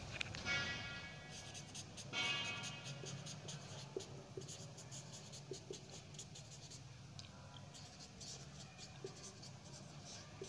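Marker pen writing on a whiteboard: a run of short rubbing strokes, with the tip squeaking briefly about half a second in and again about two seconds in.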